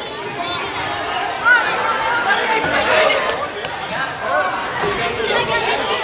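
Chatter of many children's voices overlapping at once in a large gym hall, with no one voice standing out and a brief louder call about a second and a half in.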